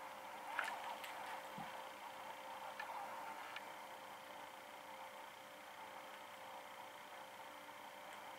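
Faint steady room hum with a few soft clicks and light rustling in the first few seconds, from a cat pawing and biting a plush toy on carpet.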